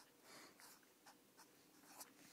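Faint strokes of a felt-tip marker writing on paper, in a few short scratches.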